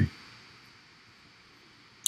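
Near silence: faint room tone, with the tail of a throat clear fading out in the first half second.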